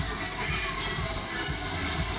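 High, thin metallic squeal from a spinning children's fairground jet ride, starting about two-thirds of a second in and stopping past a second and a half, over fairground music with a steady thumping beat.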